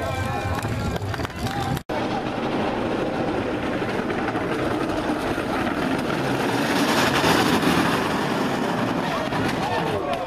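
Solid wheels of an unpowered soapbox racing cart rolling and scrubbing on asphalt as it runs past close by, with smoke coming off a rear wheel as it skids. The noise swells to its loudest about seven seconds in, then eases off.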